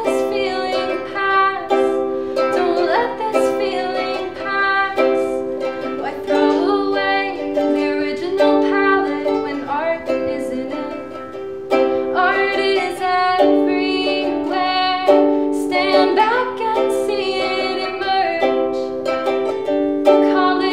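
Ukulele strummed in chords, with a short lull a little past halfway before the strumming picks up again.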